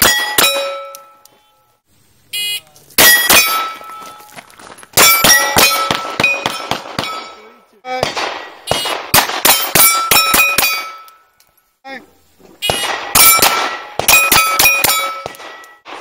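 A .22 rimfire pistol firing quick strings of shots at steel plates, each hit ringing out with a metallic clang. A short electronic shot-timer beep sounds about two and a half seconds in, and several more strings of shots and ringing steel follow.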